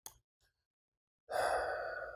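A man's long sigh, a breathy exhale starting just over a second in and fading over about a second, after a faint click at the very start.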